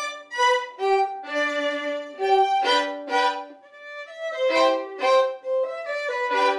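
Two violins playing a duet together, bowed notes moving several times a second, with a brief softer moment about three and a half seconds in.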